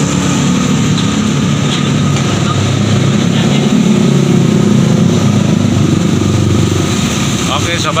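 Motorcycle engine running steadily close by, with the hum of passing street traffic.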